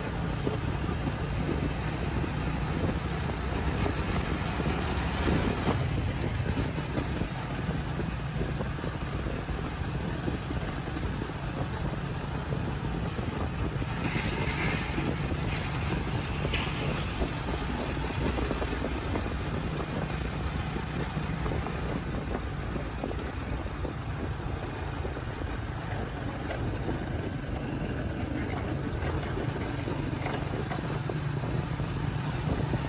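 Steady drone of a motorcycle ride: the engine running at an even cruising speed under road and wind noise, with a brief higher hiss about halfway through.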